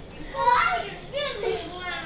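Young children yelling and squealing in play, two high-pitched cries in quick succession with no clear words.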